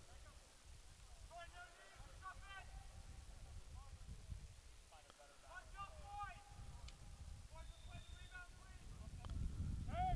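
Faint, distant voices of soccer players and coaches calling out across the field in a few short calls, over a steady low rumble.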